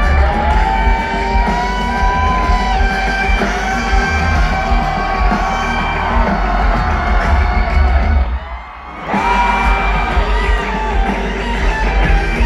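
Rock band playing live through a large concert sound system, with electric guitar prominent. About eight and a half seconds in, the music drops out for under a second, then the band plays on.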